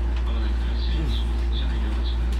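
JR West 223 series electric train running, heard from behind the driver's cab: a steady low rumble with motor whine sliding in pitch, and a few short high chirps.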